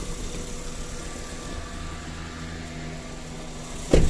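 Mitsubishi Mirage G4's three-cylinder engine idling with the aircon on, a misfire on cylinder 3 that the scan tool ties to an injector 3 circuit fault. A single loud thump comes near the end.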